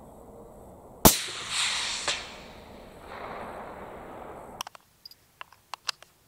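A single rifle shot from a Benelli Lupo bolt-action rifle in 6.5 Creedmoor about a second in, its report rolling away in a long echo over several seconds, with a second sharp crack about a second after the shot. Near the end, a few light clicks of cartridges and the magazine being handled.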